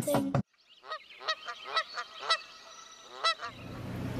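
Geese honking: a string of about eight short calls spread over two and a half seconds.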